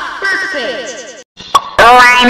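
Heavily distorted, effect-processed cartoon soundtrack: a run of quick falling pitch glides, a brief dropout, a click, then a loud voice cutting in near the end.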